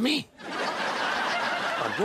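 A brief comic voiced snore, rising then falling in pitch, followed by canned studio audience laughter for about a second and a half.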